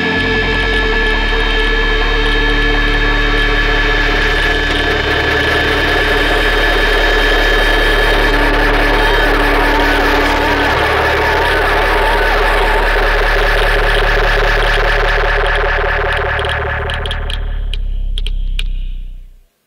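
Instrumental stoner/sludge-metal music holding one loud, sustained droning chord of many steady tones over a deep bass hum, ringing out as the album's closing track ends. It thins slightly near the end.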